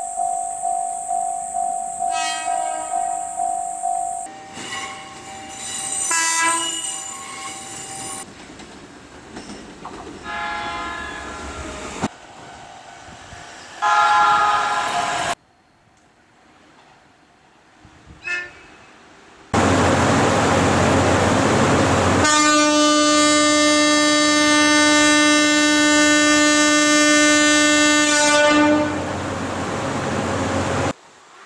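Horns of several Japanese trains, one clip after another with abrupt cuts between them: steady blasts and several shorter ones, then near the end a single loud, steady horn blast lasting about nine seconds.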